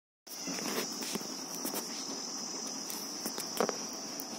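Steady high-pitched cricket trill, with a few faint clicks and knocks.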